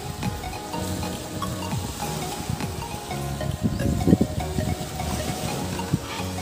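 Background music with steady held notes and a repeating bass line.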